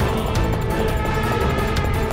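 Dramatic film background score: sustained tones over a dense low rumble.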